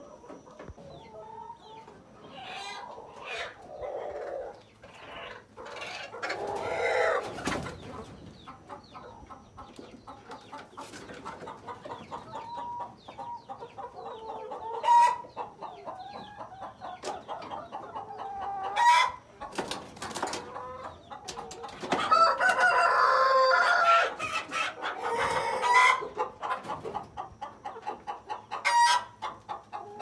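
Chickens clucking and calling throughout, with a longer drawn-out call about two-thirds of the way through. A few sharp knocks stand out as the loudest moments.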